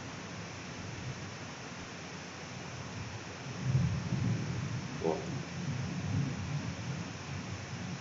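Steady hiss of a computer microphone, with a fluctuating low rumble setting in about three and a half seconds in.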